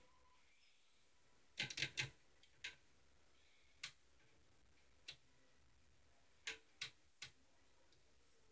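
Faint, short spritzes at irregular spacing, a quick cluster of three a little over a second and a half in, then single ones every second or so: a hand-held plastic spray bottle misting water into a glass reptile tank.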